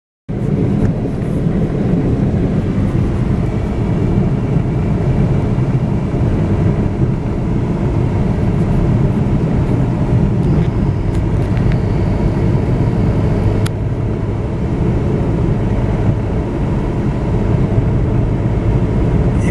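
Steady low rumble of a car's engine and tyres on the road, heard from inside the moving car's cabin, with one short sharp click about two-thirds of the way through.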